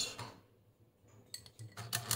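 A sensor probe clinks against ice cubes in a glass. Then the Mettler TM15's stepper-motor-driven mechanical counter starts ticking rapidly near the end as its digit wheels roll the temperature reading down.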